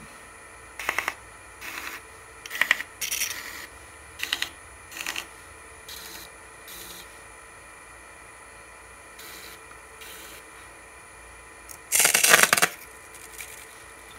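Pencil point scratching against a wood blank spinning on a lathe: a series of short scratches, one for each ring line marked, with a louder, longer scratch near the end.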